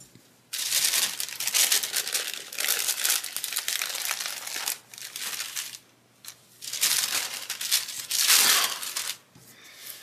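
Crinkling and rustling of a crumpled translucent sticker sheet as stickers are peeled off it by hand. It comes in two long stretches, with a short pause about six seconds in.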